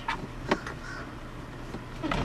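A single sharp click about half a second in, then faint handling noise, as a cable is pushed up behind plastic dashboard trim by hand.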